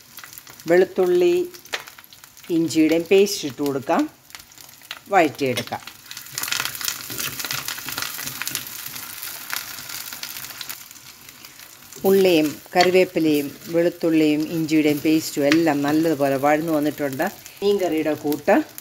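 Shallots, curry leaves and ginger-garlic paste sizzling in hot coconut oil in a clay pot, stirred with a steel ladle. The sizzle is steady and plainest in the middle, with a voice talking over it in the first few seconds and again over the last six.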